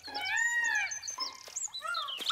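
A cartoon animal call: one pitched cry about three quarters of a second long that rises and then falls, followed by a few short, faint high chirps.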